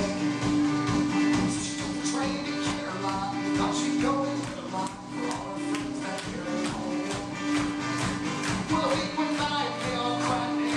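A live band playing a song: acoustic guitar, electric bass and drum kit, with evenly spaced drum hits and a sustained bass line.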